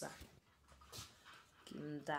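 A quiet pause in a woman's talk, with faint breaths, before her voice starts again near the end.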